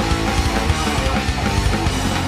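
A hardcore punk band playing live: loud electric guitars over a drum kit.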